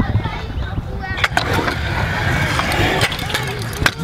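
Stunt scooter wheels rolling on skatepark concrete over a low rumble, with a few sharp clacks of the scooter striking the concrete.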